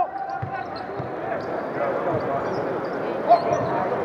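Live basketball play in a large arena: players' voices and calls, with scattered low thuds of the ball and feet on the hardwood court.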